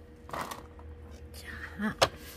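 A woman's brief wordless vocal sounds: a breathy exhalation about a third of a second in and a short murmur near the end, over a steady low hum.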